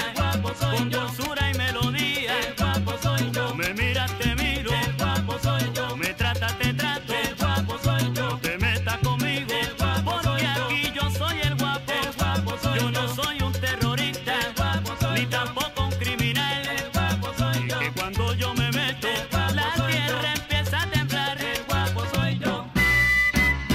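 Salsa band playing an instrumental passage with no vocals: a repeating bass line under busy melodic lines higher up.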